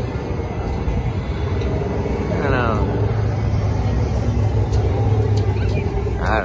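Low, steady engine rumble from cars at a drag strip, growing louder in the second half.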